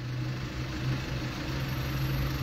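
Steady low hum of a vehicle's engine idling, heard from inside the cabin.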